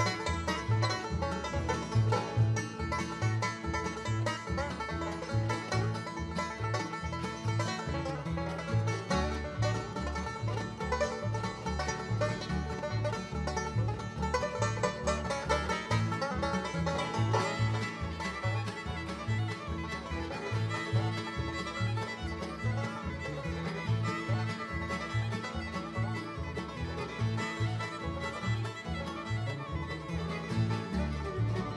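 Live bluegrass string band playing an instrumental passage: fiddle, banjo, mandolin and guitars over a steady beat from an upright bass.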